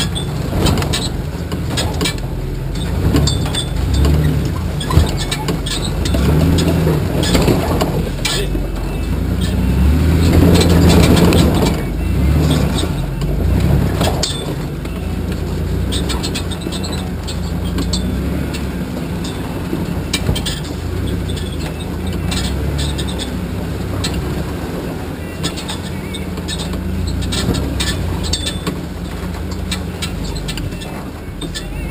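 Solid-axle-swapped Chevy S10 Blazer's engine running and working up and down in effort as it crawls a rutted trail, pulling hardest about ten to twelve seconds in. Frequent clanks and rattles throughout, with a sharp knock about five seconds in.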